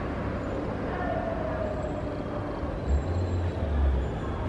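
Town street traffic, a steady hum of vehicles, with a faint slightly falling tone in the middle and a low rumble swelling near the end.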